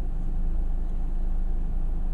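Steady low rumble of a car engine idling, heard from inside the car's cabin.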